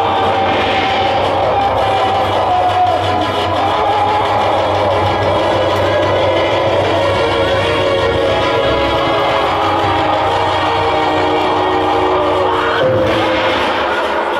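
Live jas devotional folk music from the stage band, with long held notes over a steady accompaniment, running without a break.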